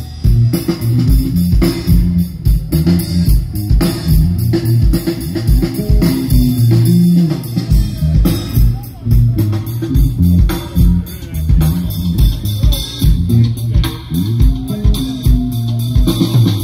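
Live punk rock band playing an instrumental passage with no vocals: a heavy bass guitar line to the fore, with electric guitar and a steady drumbeat.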